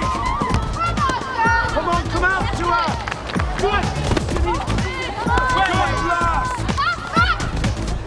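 Background music over the high shouts of girls playing football and calling to each other.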